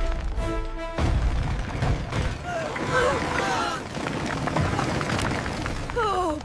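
Cartoon soundtrack of a debris pile crashing and rumbling, under dramatic music that holds steady tones in the first second. A short vocal cry comes about three seconds in.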